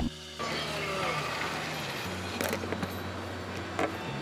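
Self-serve smoothie blending machine being worked: two sharp clicks, about a second apart, and a low steady hum that starts about two seconds in, under soft background music.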